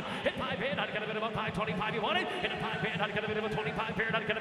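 A man's voice calling bids in an auctioneer's rapid chant.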